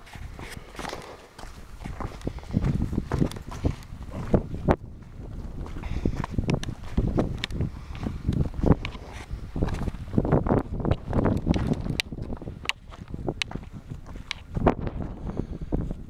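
Footsteps scuffing and knocking on a rocky path, coming at an irregular pace on the way down, with wind buffeting the microphone.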